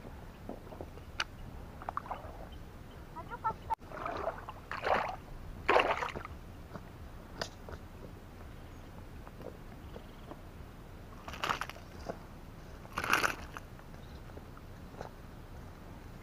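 Faint, scattered rustles and small splashes, a few seconds apart, from feet and hands moving through wet grass and shallow water while a small fish is landed.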